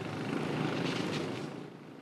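An engine running steadily with a fast, even pulse, swelling a little and then fading away over the last half second.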